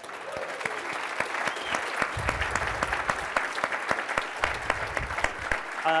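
Audience applauding: many hands clapping in a dense, steady patter that starts suddenly.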